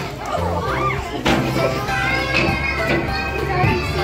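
Young children's excited voices over background music with a steady bass line.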